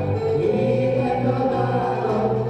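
A band playing live, with several voices singing together over a steady bass line.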